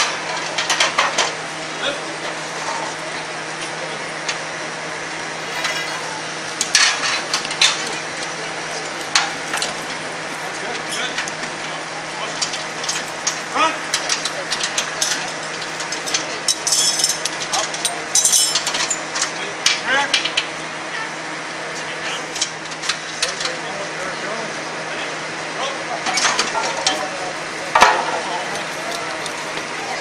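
Metal parts clinking, clicking and knocking at irregular intervals as a machine is rapidly put back together by hand, over a steady hum and a murmur of voices.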